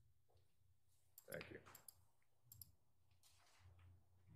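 A few faint, sharp clicks over a steady low hum, otherwise near silence.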